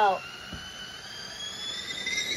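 Stovetop kettle whistling at the boil: one steady high whistle with overtones, slowly rising in pitch.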